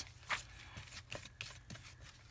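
Faint rustles and a few light scrapes of torn fabric and paper being handled and pressed onto a journal page, over a low steady hum.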